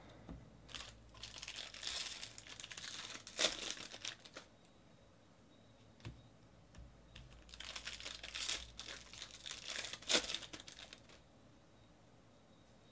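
A stack of 2018 Bowman Draft baseball cards being slid and flicked through by hand: two stretches of papery rustling a few seconds each, with light clicks of cards against each other.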